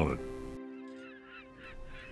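A steady held tone of several pitches at once, slowly fading, with a few short bird calls over it in the middle.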